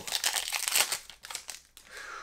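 Foil wrapper of a Pokémon trading-card booster pack crinkling as it is torn open by hand, dying away after about a second.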